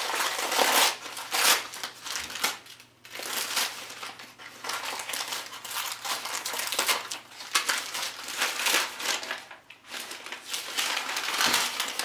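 Newspaper wrapping crinkling and rustling as it is pulled and crumpled off an object by hand, in irregular bursts with two brief lulls.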